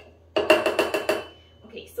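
A wooden muddler knocking and grinding in a copper cocktail shaker tin, crushing watermelon chunks and basil leaves, in a quick run of knocks lasting under a second. A high ring from the tin lingers briefly after.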